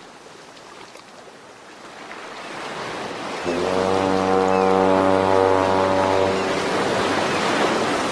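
Sound-designed intro sting: a rushing, surf-like noise swells, then about three and a half seconds in a deep horn-like tone enters over it and holds for about three seconds before fading, with the rush carrying on.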